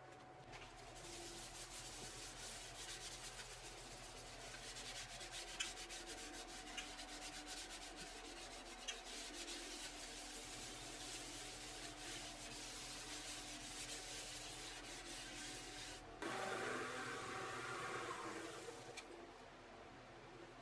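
A hand rubbing over the finished surface of a monkeypod (acacia) bowl mounted on the lathe, a soft steady rubbing with small ticks. The rubbing gets louder and brighter for about two seconds near sixteen seconds in.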